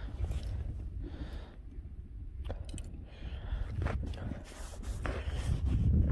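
Low steady rumble of wind on the microphone, with faint breathing and a few small clicks from handling a spinning rod and reel.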